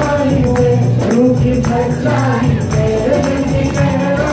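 Live worship music: a man singing a song into a microphone, joined by a second voice, over acoustic guitar and a steady beat.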